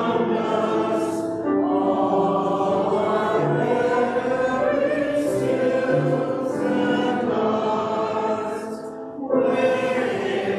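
A church choir sings a hymn with grand piano accompaniment in long held notes. The singing breaks briefly between phrases about a second in and again near the end.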